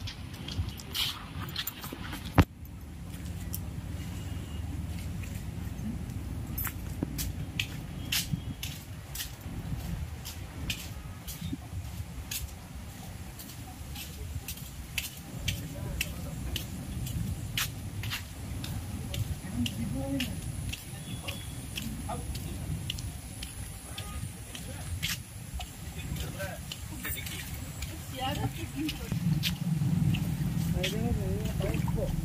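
Footsteps in rubber flip-flops and phone handling noise: irregular slaps and clicks over a low wind rumble, with one sharp knock a couple of seconds in. Faint voices are heard in the background.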